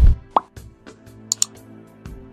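Subscribe-button animation sound effects: a low thump, a short rising bloop-like pop, then two quick clicks like a mouse button about a second later, over a soft music bed of sustained tones.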